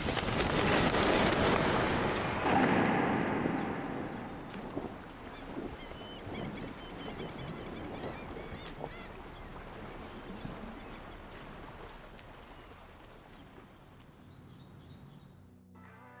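Outdoor ambience: a rushing noise that is loudest in the first few seconds and slowly fades, with birds chirping faintly through the middle and near the end.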